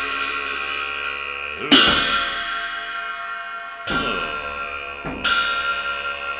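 Pair of hand cymbals clashed three times, a little under two seconds in, near four seconds and just past five seconds. Each clash leaves a long, shimmering ring that runs on into the next.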